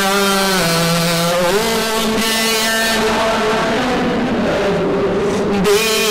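A man's voice singing a devotional song in long held notes that step down in pitch about half a second in and back up about a second later. The melody grows fainter and less distinct in the second half.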